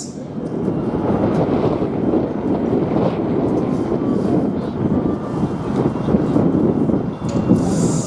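Steady wind noise on the microphone: a dense rush with no clear pitch and no voices.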